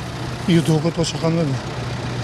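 Diesel engine of a ZMAJ combine harvester running steadily, a constant low hum under a man's voice.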